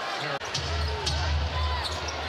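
Basketball arena game sound: a steady low crowd rumble with faint distant voices and a few sharp knocks from the court. The sound drops out for a moment a little under half a second in.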